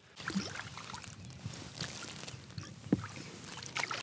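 Water lapping and splashing at the side of a boat, with a few light knocks and a sharper tap about three seconds in.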